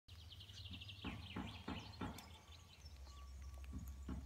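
Songbirds singing in the surrounding woods, opening with a rapid high trill and followed by several short sweeping calls, over a steady low rumble.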